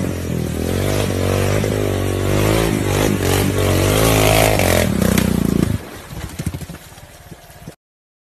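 Quad bike (ATV) engine running and revving, its pitch rising and falling as it is worked, then dropping away suddenly about six seconds in, leaving faint scraping and clattering.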